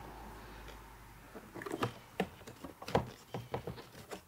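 Tesla Model Y HEPA cabin air filter being pulled out of its plastic housing: a string of light plastic clicks and scraping rubs starting about a second and a half in.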